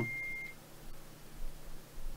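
A single steady high-pitched electronic beep that cuts off about half a second in, followed by quiet room tone with a faint low hum.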